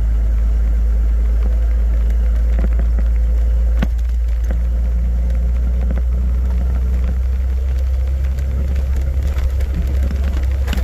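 Four-wheel drive travelling along a soft red sand track: a loud, steady low rumble of the moving vehicle, with a few sharp clicks and knocks from the rough track. The rumble shifts about four seconds in and grows more uneven towards the end.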